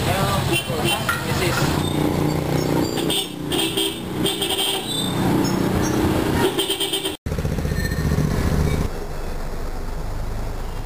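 Busy street traffic: motorcycle engines running, several horn toots and people's voices. After a break about seven seconds in, a steadier low engine drone takes over.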